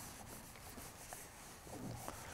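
Faint rubbing of an electric clothes iron sliding over satin fabric.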